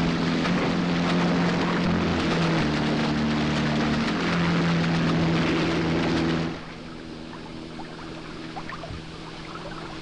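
Motorboat running fast with loud rushing spray and a steady low drone; about six and a half seconds in it drops to a much quieter wash of water with the low drone still faintly under it.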